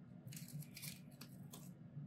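Faint handling sounds of a small plastic fragrance mist bottle and paper packaging: short soft rustles and a few light clicks.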